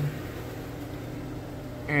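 A steady, even low machine hum with a constant low drone, like a motor or engine running without change.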